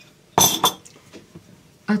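Kitchenware clinking: a sharp, ringing clink with a second one right after it about half a second in, then a few faint taps.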